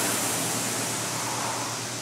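Concept2 rowing ergometer's air-resistance fan flywheel whooshing as it spins, fading slowly while it coasts during the recovery between drives.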